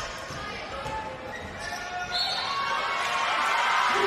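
Sounds of a basketball game in an indoor gym: the ball bouncing on the hardwood court among crowd and player voices, the crowd noise growing louder about halfway through as a basket is scored.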